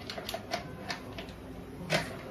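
An irregular run of light clicks and taps from kitchen items being handled, about six in two seconds, with the sharpest click near the end.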